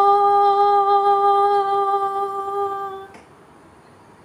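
A woman's solo voice holding one long, steady note, the song's final note, with no accompaniment heard. The note ends cleanly about three seconds in.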